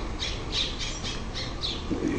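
A bird calling repeatedly in short, harsh squawks, about three to four a second, over a low steady background hum.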